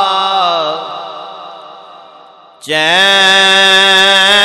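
A man's voice chanting a devotional naat in long, melismatic held notes: a wavering note fades away over about two seconds, then a new held note starts suddenly and loudly just before three seconds in.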